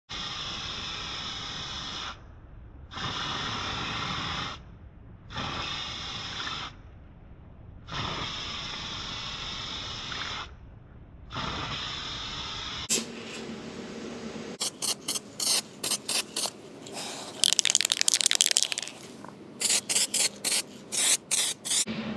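Aerosol spray paint can hissing in five bursts of about two seconds each, with short pauses, as engine mount brackets are coated. After that comes a run of sharp clicks and knocks, some in quick series.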